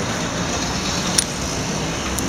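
Steady street traffic noise from passing cars, with one short light click about a second in.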